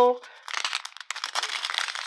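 Thin clear plastic bags of square diamond-painting drills crinkling as they are handled and turned over in the hands, a dense irregular crackle that sets in about half a second in.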